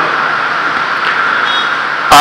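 Steady, even hiss of background noise picked up by the pulpit microphone, with no voice in it.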